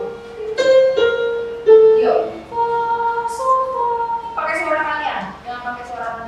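Electronic keyboard playing a short line of sustained single notes, the kind a choir trainer plays to give singers their pitches. Short bursts of voices come in between the notes.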